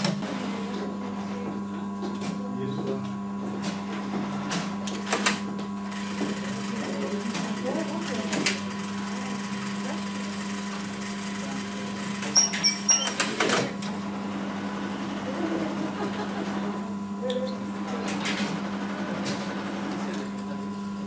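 Industrial lockstitch sewing machine stitching a fabric face mask over a steady electric hum, with a few sharp clicks and short clattery bursts, the loudest a little past the middle.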